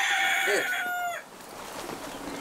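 A rooster crowing: one long, drawn-out crow that falls away and stops about a second in.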